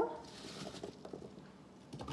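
Faint, soft handling noise of hands gathering diced green apple pieces over a glass mixing bowl, with a few small quiet ticks.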